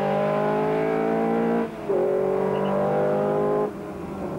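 Classic car's engine pulling hard at high revs, its pitch climbing steadily; a short dip about two seconds in as it shifts up a gear, then it climbs again before falling away near the end.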